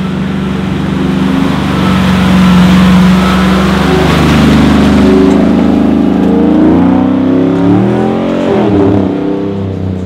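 A Toyota LandCruiser's engine pulls through a river crossing with water surging around the front. About four seconds in, the revs rise and waver as it climbs out up the bank. The engine note fades near the end as the vehicle drives away.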